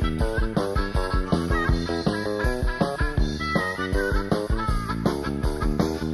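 Instrumental passage of a Bavarian-dialect rock song, from a 1982 studio demo: drums keep a steady beat under bass guitar and electric guitars, with no vocals.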